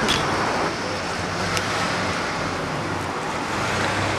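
Steady outdoor road-traffic noise: a constant even rush with a low hum beneath it.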